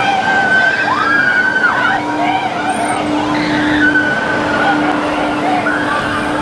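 Riders on a spinning amusement ride squealing and shrieking: several long high cries that rise, hold and fall, over a steady hum from the ride's machinery.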